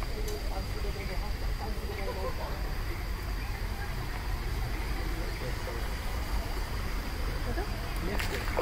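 Outdoor park ambience: a steady low rumble and hiss, with faint distant voices talking, mostly in the first few seconds.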